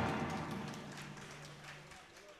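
The final chord of two acoustic guitars and an electric bass ringing out and fading away, with a low bass note held until it cuts off near the end.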